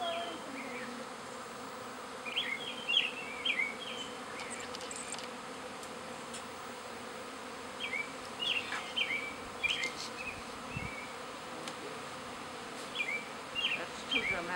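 A honey bee swarm buzzing, a steady dense hum of many bees flying around their cluster in a tree. Three bouts of short high chirps rise above the hum.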